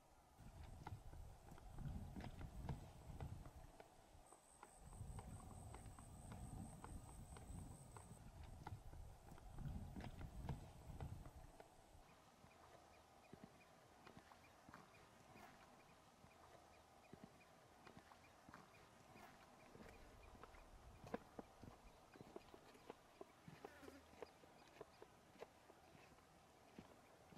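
Faint outdoor ambience: low rumbling gusts of wind on the microphone during the first twelve seconds, scattered light clicks and ticks throughout, and a faint high pulsing tone for a few seconds near the start.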